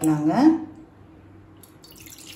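A woman's voice trails off briefly at the start, then quiet room tone; right at the end, water begins pouring from a measuring cup into an empty iron kadai.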